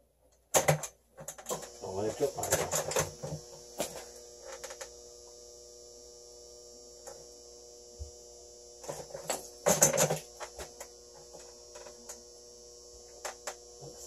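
Clattering knocks and handling noise that start suddenly about half a second in and return in bursts, over a steady hum with a high hiss from the HHO gas torch and its generator.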